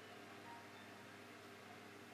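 Near silence: room tone, a faint steady hum under a light hiss.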